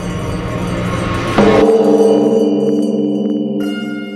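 A large bronze temple bell struck once about a second and a half in, after a rising swell of sound, then ringing on with a deep hum that pulses and slowly fades.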